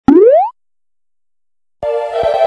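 A cartoon "boing" sound effect, a single quick upward pitch glide lasting under half a second. Then silence, and keyboard music starts near the end.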